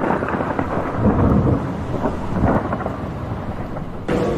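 Thunderstorm sound effect: steady rain with rolling rumbles of thunder, ending abruptly.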